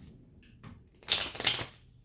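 A deck of tarot cards shuffled by hand: faint rustling, then a louder burst of cards slapping and sliding together about a second in, lasting about half a second.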